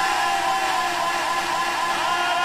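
A man's voice holding one long high note over a public-address system, sagging slowly in pitch, with a fast fluttering echo from the sound system's echo effect.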